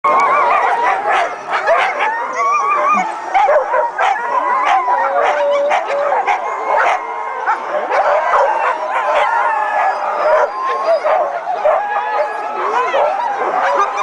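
A chorus of many harnessed husky sled dogs barking, yipping, howling and whining all at once, without a break, the din of teams hitched to their sleds and waiting to run.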